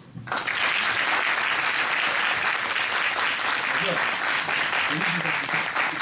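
Audience applauding: the clapping starts suddenly right at the beginning and runs on steadily, easing a little near the end.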